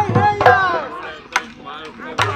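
Bihu dhol, a two-headed barrel drum played by hand and stick, struck in sharp strokes that are loudest in the first half, with voices over the drumming.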